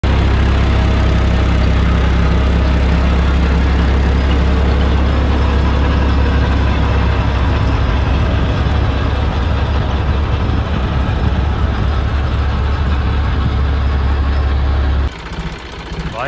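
John Deere 5405 tractor's three-cylinder diesel engine running loud and steady close by, with a rotavator hitched behind. The sound stops abruptly about fifteen seconds in.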